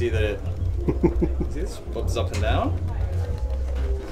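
People talking indistinctly over a steady low rumble.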